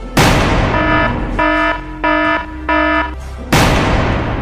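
Two loud crashes with long fading tails, one just after the start and one near the end, as a dinosaur slams into metal cage bars. Between them an alarm gives four short beeps, a little over one a second.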